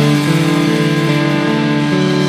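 A live rock band holding a sustained chord, steady notes ringing on without drums.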